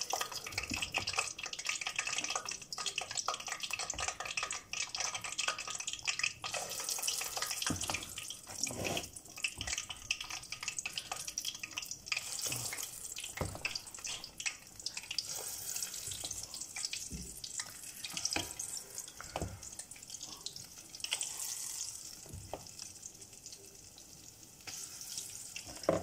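Akara (bean-batter fritters) frying in a pot of hot oil with a steady sizzle, mixed with scattered clicks and scrapes of a metal spoon scooping batter in a bowl.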